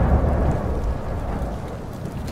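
The fading tail of a deep cinematic boom from the trailer's sound design: a low rumble under a noisy hiss, getting steadily quieter.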